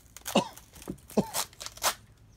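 A person coughing about four times in quick, harsh bursts, several dropping in pitch, as if from the smoke of burning paper.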